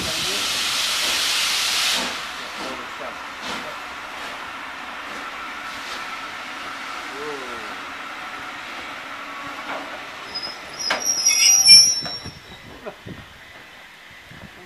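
A steam-hauled train of passenger coaches rolling slowly past, arriving at a station: a loud hiss for the first two seconds, then the steady run of wheels on rail with a faint thin squeal, and a shrill brake squeal about eleven seconds in as the train slows, the loudest sound.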